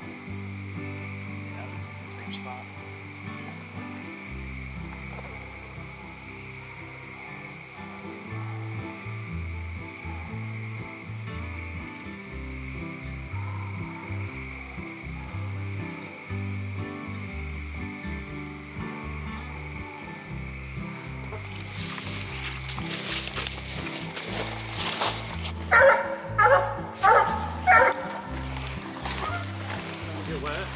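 Background music over a steady high drone of night insects. Near the end a coonhound barks four times in quick succession, loud and close.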